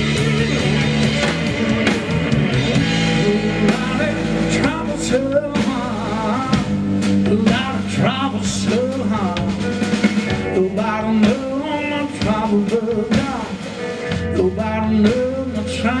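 Live blues band playing: electric guitar, electric bass and drum kit, with a man singing over them from about four seconds in.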